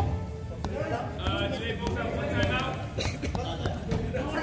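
Voices and background music echoing around an indoor gymnasium, with a few short sharp knocks from the court.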